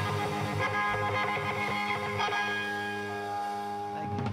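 Live band music led by guitar: an instrumental passage with held, ringing notes.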